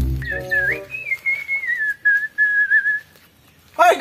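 A single long whistled note, rising briefly and then sliding slowly down in pitch before stopping about three seconds in. Background music runs under it for about the first second.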